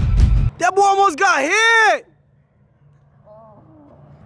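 Background music with a heavy bass beat that stops about half a second in, followed by a drawn-out voice rising and falling until about two seconds, then it cuts off suddenly to a faint background with a brief, quiet voice.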